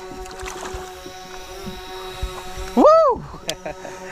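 A steady electric motor hum with several fixed tones throughout. About three seconds in comes a man's loud rising-and-falling whoop of celebration as a largemouth bass is landed.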